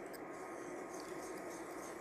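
Wire whisk stirring a thin lime curd mixture in a stainless steel saucepan, a faint light scraping with soft ticks of the wires against the pan.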